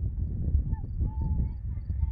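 Wind buffeting the microphone: an irregular, gusting low rumble, with a few faint thin whistle-like tones above it.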